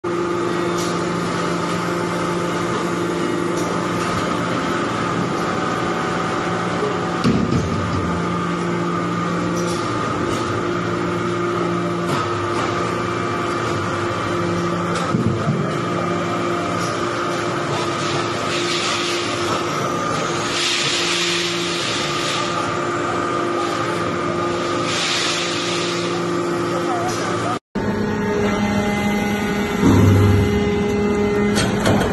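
Hydraulic metal powder briquetting press running: the steady hum of its hydraulic power unit, with the lowest tone dropping out and returning every few seconds as the press cycles. A few short bursts of hiss come around twenty seconds in.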